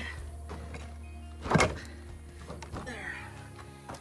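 A heavy rough stone set down onto gravel-covered ground with a single thud about a second and a half in, over background music.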